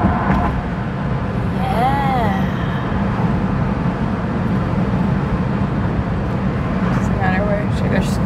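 Steady engine and road noise heard inside the cabin of a moving Honda car, a low, even rumble with no change in pace. A short voice-like sound comes about two seconds in.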